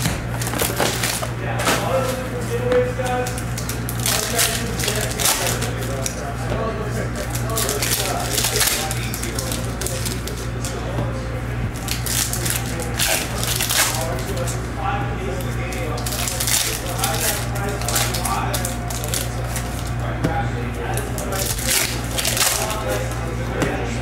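Foil trading-card pack wrappers crinkling and tearing open in repeated short crackles, with cards handled in between, over a steady low hum.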